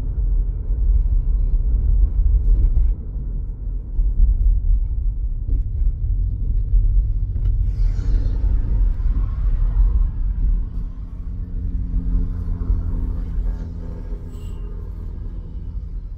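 Car cabin road noise from a moving car: a heavy, steady low rumble of engine and tyres. About eight seconds in, a brief brushing handling noise is heard as an arm passes close to the phone. In the second half a steady low hum comes in and the rumble eases a little.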